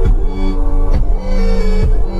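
Electronic background music: sustained synth notes over a heavy bass beat, with a deep bass hit about once a second.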